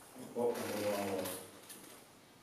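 A man's voice, low and indistinct, murmuring for about a second before trailing off.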